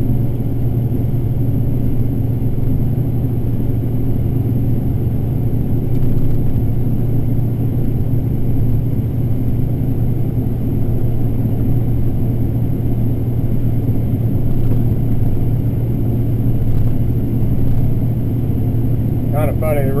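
Combine harvester running steadily while shelling corn, heard from inside the cab as a constant low drone of engine and threshing machinery.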